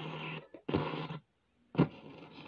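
Steady low hum with a hiss from the record-player setup while the record turns, breaking off twice, then a single short knock near the end.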